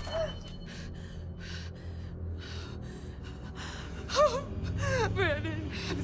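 A person breathing hard in quick ragged gasps, then whimpering cries that waver up and down in pitch from about two-thirds of the way in, over a low steady drone.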